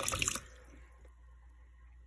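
Kitchen tap running into a stainless steel sink, splashing over metal charms in a plastic colander. The water is shut off about half a second in, leaving faint room tone.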